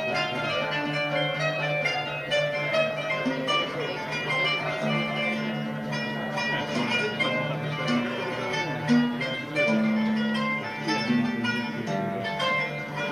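Live music led by plucked string instruments playing a melody over held low notes.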